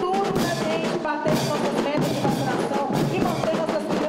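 A school marching band's percussion section of snare drums, bass drums and crash cymbals playing a steady marching beat, with some held melodic tones over the drums.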